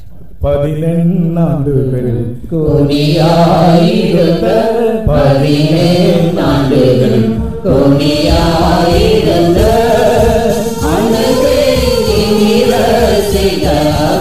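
Slow devotional singing: a chant-like melody of long held, gliding notes over a steady low drone. About halfway through, a regular low beat comes in.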